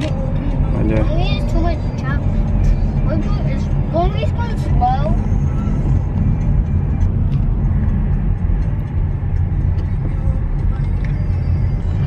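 Steady low road and engine rumble inside a moving car's cabin, with faint voices or music over it in the first few seconds.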